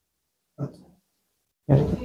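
Mostly silence, broken by two short, cut-off fragments of a man's voice: one about half a second in, and a slightly longer one near the end.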